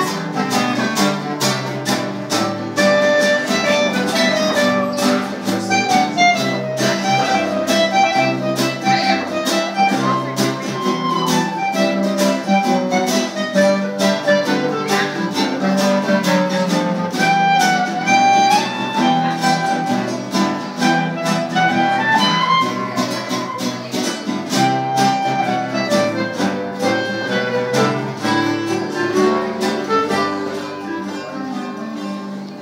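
Small acoustic ensemble playing: two acoustic guitars strumming a steady rhythm, a clarinet carrying the melody, and a bass clarinet on the low part.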